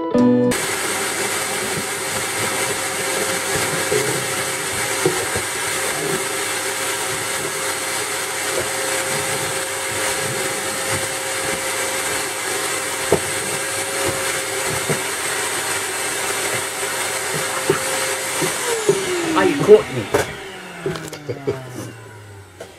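Vacuum cleaner running steadily, a hum with a high whine over it. Near the end it is switched off and the motor winds down, its pitch falling away, followed by a few knocks.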